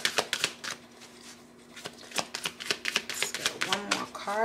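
A deck of tarot cards being shuffled by hand: rapid, crisp card clicks that ease off about a second in and pick up again from about two seconds.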